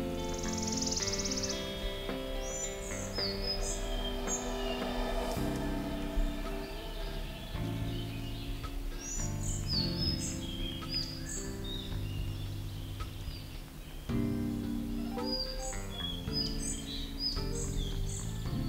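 Soft background music of sustained chords with woodland songbirds singing over it. A wood warbler's high buzzing trill comes in the first second, and short phrases of high whistled notes recur three times.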